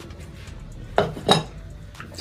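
A plate and fork set down: two short clinks about a third of a second apart, about a second in.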